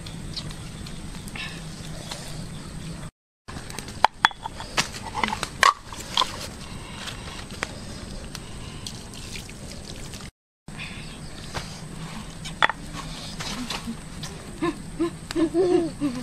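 A steady low hum with scattered sharp clicks and knocks, busiest about four to six seconds in, and a few short voice sounds near the end.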